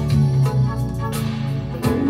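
Music played back off cassette tape through the Aiwa AD-F770 three-head deck's playback head, monitored off the tape as it records, with Dolby B noise reduction on.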